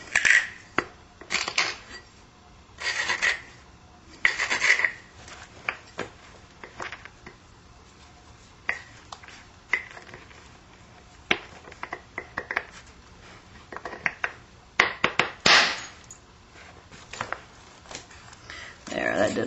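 Flintknapping: a stone rubbed in short rasping strokes along the edge of a stone preform, with light clicks and taps of stone on stone in between. A louder burst of scraping comes near the end.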